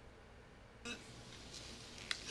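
Near silence: faint room tone with a low hum, and one brief soft noise a little under a second in.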